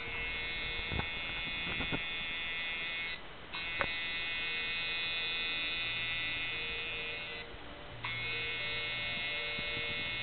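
Electric tattoo machine running with a steady, high buzz, cutting out briefly twice as the needle is lifted, with a few light clicks.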